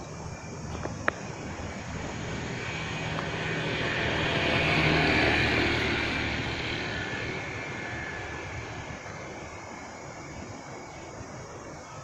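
A propeller or jet aircraft passing overhead, its engine noise swelling to a peak about five seconds in and then slowly fading away. There is a single sharp click about a second in.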